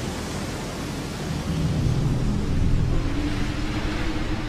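Storm-and-flood sound effect: a loud rushing noise with a low rumble, building to its loudest about three seconds in, over background music.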